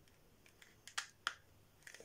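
Faint, sharp clicks and taps, four or five of them, as a ferro rod with a wooden handle is handled and pushed into a stiff tooled leather holder.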